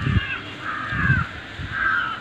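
A crow cawing, about three short, harsh calls in quick succession.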